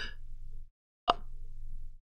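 A single short mouth click, a lip smack, about halfway through, over a low hum from the microphone that cuts out to dead silence just before the click.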